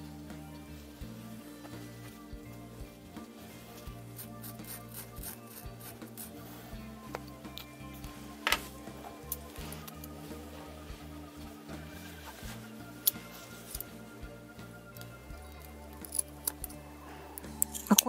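Background music with scissors snipping through the knitted backing of faux fur, a few sharp snips, the loudest about halfway through and a cluster near the end.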